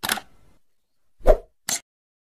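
Short sound effects of an animated logo sequence: a sharp hit at the start that fades within half a second, then two quick pops about a second and a half in.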